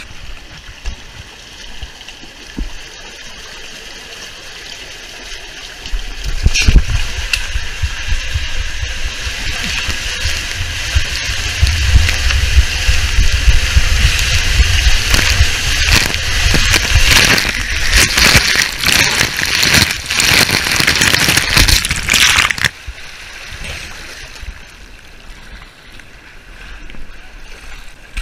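Water rushing and sloshing around a rider sliding down a water-park slide, heard close up on a body-worn camera. About six seconds in it becomes much louder, with a low rumble and crackly splashing while inside an enclosed tube, then drops off suddenly near the end.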